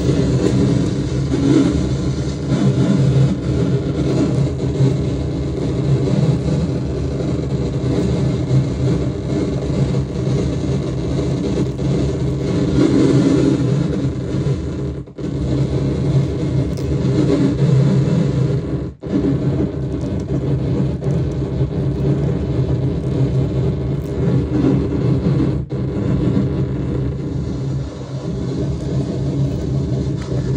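Harsh noise from a comb sounded into a contact-mic noise box and run through a Mantic Hivemind fuzz (a DOD Buzzbox clone) and a DOD Death Metal distortion pedal. It makes a loud, continuous wall of distorted low-heavy noise that cuts out for an instant three times in the second half.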